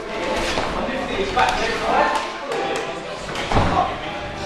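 Scattered thuds and slaps from mixed martial arts drilling: bodies landing on floor mats and gloved punches, with background voices.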